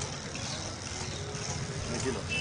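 Steady street background noise: a low traffic rumble with an even hiss over it.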